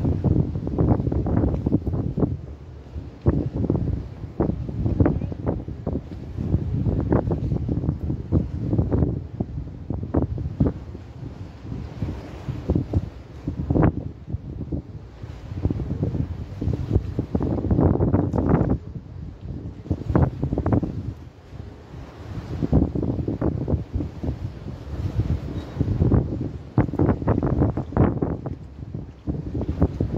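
Wind buffeting the phone's microphone: a gusty low rumble that swells and drops every few seconds, with scattered short crackles.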